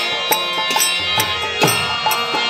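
Kirtan accompaniment: a harmonium holding steady chords while a mridanga drum keeps an even beat of about three strokes a second, with a deep bass stroke that drops in pitch a little past halfway.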